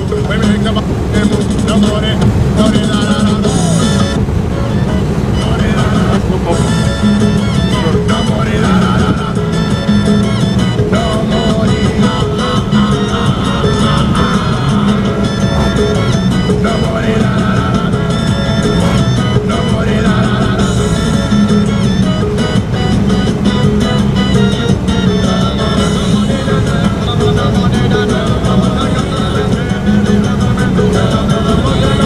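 Music with a singing voice playing on the taxi's car radio, over a steady low hum of road and engine noise from the moving car.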